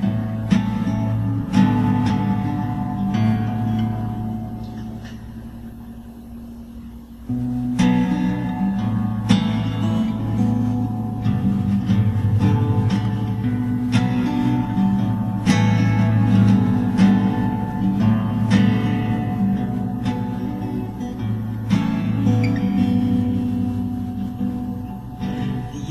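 Acoustic guitar playing a slow instrumental intro, chords struck and left to ring. The sound dies away for a few seconds, then the playing comes back fuller about seven seconds in and carries on steadily.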